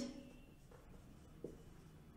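Faint scratching of a marker writing on a whiteboard, with a light tap about one and a half seconds in.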